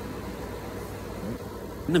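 Steady low background rumble like a distant idling engine, with a man starting to speak at the very end.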